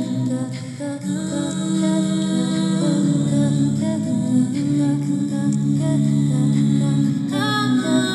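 A woman's voice humming in live-looped layers, several long held notes stacked into a steady chord. A higher sung line joins near the end.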